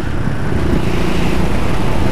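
Motorcycle engines running at low speed, a steady low rumble: the rider's Suzuki DR200 single-cylinder and a Suzuki S40 650 cruiser drawing alongside.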